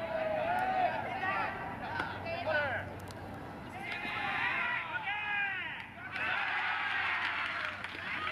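Several voices of players and onlookers calling out across a baseball field, overlapping one another, with a burst of raised voices about four seconds in as a runner is tagged out stealing second base.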